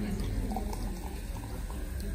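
Café room ambience: a steady low hum under a faint murmur of background voices, with no single clear event.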